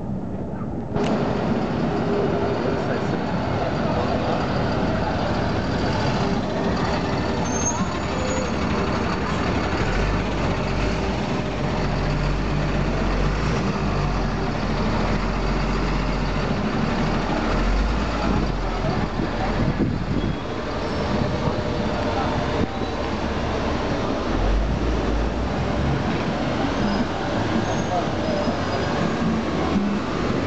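Busy street traffic: a diesel delivery truck and the Lamborghini Gallardo LP570-4 Superleggera's V10 engine running at low speed, with crowd voices mixed in. A deep engine rumble swells about a third of the way in and again near the end.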